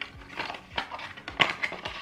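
A small cardboard box being handled and opened: a string of light scrapes, taps and rustles of card, with a sharper click about one and a half seconds in.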